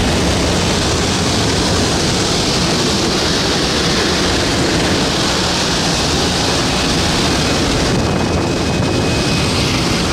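Loud, steady noise of a skydiving jump plane in flight: its engine running and wind rushing in through the open jump door.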